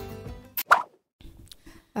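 Background music fading out, then a single short plop sound effect under a second in.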